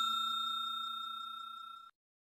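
The fading tail of a bell-ding sound effect from a subscribe-button animation: one ringing tone, dying away steadily, then cut off shortly before the end.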